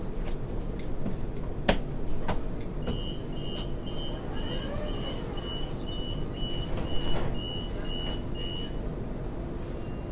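Sydney suburban train's door-closing warning: a high beep repeating about two and a half times a second for about six seconds, signalling that the doors are shutting. It plays over the steady hum of the carriage, with a couple of sharp knocks about two seconds in.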